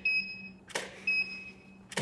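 Camera shutter clicks paired with the short, high ready beep of a Profoto D2 studio flash as it recycles after each exposure. There is a beep at the very start, a click about three quarters of a second in followed by a beep, and another click near the end.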